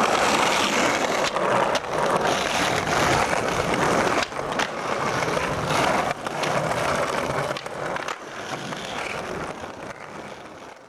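Skateboard wheels rolling on concrete pavement, with several sharp clacks of the board hitting the ground, fading out over the last couple of seconds.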